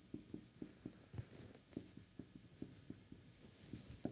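Marker pen writing on a whiteboard: a faint, quick, irregular run of short taps and strokes as letters are written.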